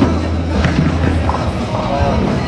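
Ninepin bowling balls rolling down the lanes with a low rumble and a few hard knocks, over background music.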